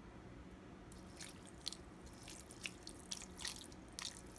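Vinegar being poured onto raw goat meat pieces in a stainless steel bowl: faint, scattered wet splashes and drips that begin about a second in.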